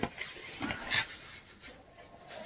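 Rustling and rubbing of a hand-knitted sock being handled, with a click at the start and a brief louder rustle about a second in.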